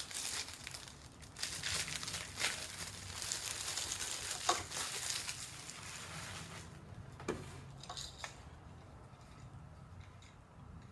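Plastic packaging crinkling and rustling as it is handled, loudest for a few seconds in the middle, with a few sharp clicks.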